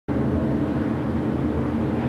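A pack of Whelen Modified race cars' V8 engines running together, a steady drone with an even pitch.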